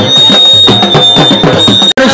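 Dhol barrel drum beaten with sticks in a brisk, even rhythm, with a thin high steady tone held above it. The sound breaks off abruptly just before the end.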